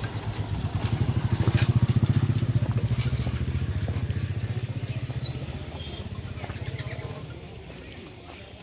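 Small motorcycle engine running at low revs with an even, fast pulse. It grows louder over the first two seconds, then fades away as the bike moves off.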